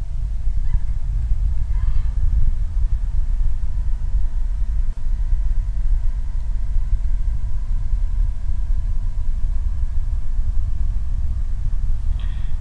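Steady low rumble of a Falcon 9 first stage's nine Merlin engines burning in flight, during the first-stage ascent.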